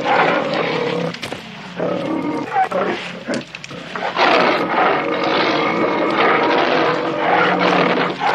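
A bear growling and roaring, loud and rough, easing off briefly twice before rising again about four seconds in.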